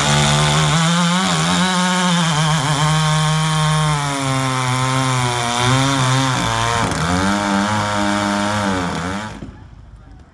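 Vintage chainsaw engine running hard at high revs, its pitch wavering and dipping. The sound breaks off suddenly near the end.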